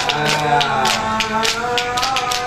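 Sholawat Nabi, devotional Islamic singing: voices holding long, gliding notes over hand percussion striking about four times a second.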